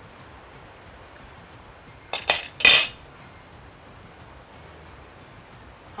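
Kitchenware clinking: two light clicks about two seconds in, then a single louder clink with a brief ring, against a quiet background.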